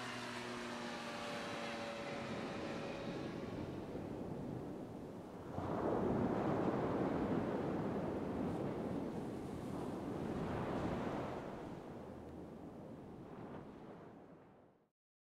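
A light aircraft's propeller drone fading out over the first few seconds. It gives way to a rushing wash of surf that swells up about five seconds in, eases, swells again a few seconds later, then fades away at the end.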